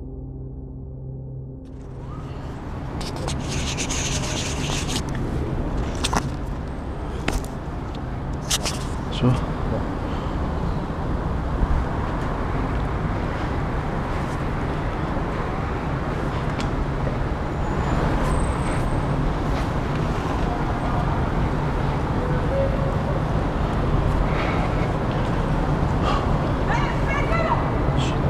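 A low music drone ends about two seconds in. Then a steady rumble of distant city traffic and wind noise fills the rest, loudening gradually. Several sharp clicks and knocks, as of hands and gear on the tower's iron girders, come in the first half.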